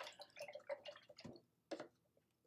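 Faint scattered small clicks and taps, irregular and brief, as of small objects being handled on a tabletop.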